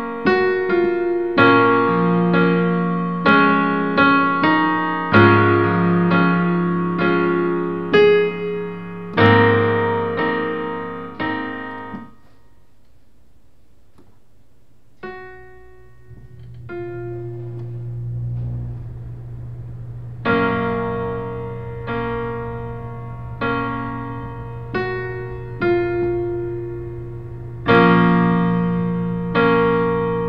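Digital piano played in slow chords, a new chord struck about every second and left to ring and fade. About twelve seconds in the playing stops for a few seconds; after a single chord, a long low note swells and holds before the chords resume.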